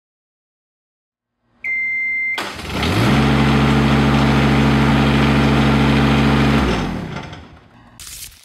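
A short high electronic beep, then an engine cranks, catches and rises to a steady run for about four seconds before dying away.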